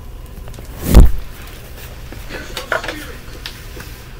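A single loud, deep thud about a second in, of the kind the uploader attributes to the upstairs neighbour jumping or dropping things hard on the floor, followed by a few faint clicks and knocks.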